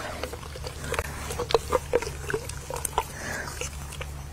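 A horse mouthing a dewormer paste syringe held in its mouth: a string of irregular wet smacks and clicks as it licks and chews on the tube.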